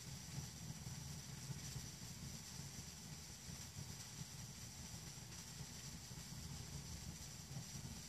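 Faint, steady low rumble of ballpark background ambience from a televised baseball game, heard through a TV speaker, with no distinct events.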